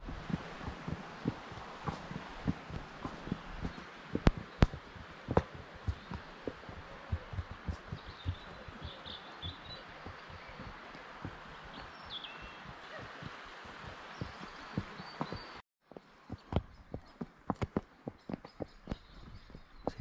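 Horse's hooves walking on a dirt track: a continuous run of short, irregular thuds and clicks over a light rustle. A few faint bird chirps come in the middle, and the sound drops out briefly near the end.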